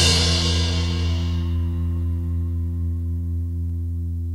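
A rock band's final chord ringing out at the end of a song, the low notes held steady while a cymbal crash fades away over the first second and a half.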